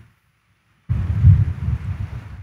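The sound cuts out completely for just under a second, then a low, uneven rumble comes in, like wind or handling noise on a microphone.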